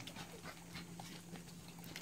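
American Bully puppies faintly moving about a wooden kennel floor, small scattered taps and clicks over a faint steady hum.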